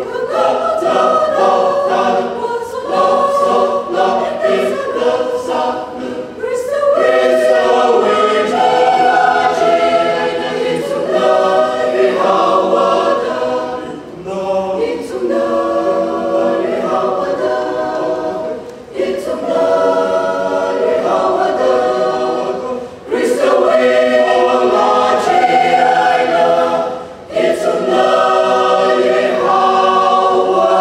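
Mixed choir of women's and men's voices singing in harmony, holding sustained chords in phrases broken by short breaths every few seconds.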